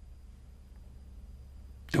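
Quiet room tone with a faint, steady low hum. A man's voice starts near the end.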